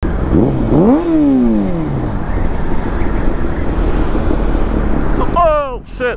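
Kawasaki ZX6R's 600cc inline-four engine rising in revs for about a second, then falling off over the next second, with steady wind and road noise on the helmet microphone after that. Near the end there is a brief, sharply falling pitched sound.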